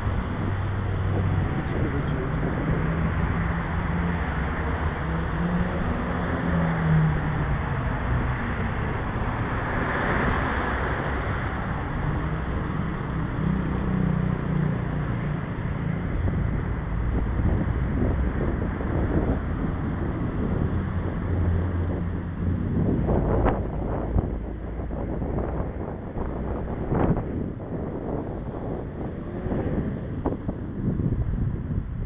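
Passing road traffic, a steady drone of car engines and tyres, mixed with wind on the microphone. Near the end come a few sharp knocks.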